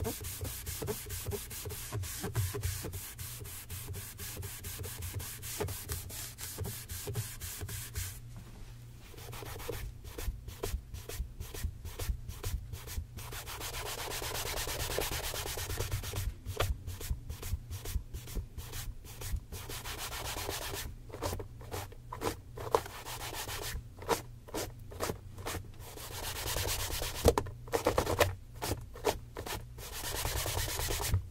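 A leather tassel loafer being buffed by hand with quick, rhythmic back-and-forth rubbing strokes, several a second. There is a brief quieter break about a third of the way through, then the strokes resume in spurts.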